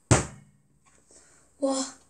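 One short dull thump at the very start, dying away within half a second, then quiet; a child's 'wa' near the end.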